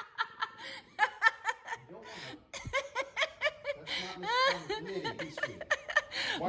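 A woman laughing in quick repeated bursts, breaking off briefly about two seconds in and then starting again.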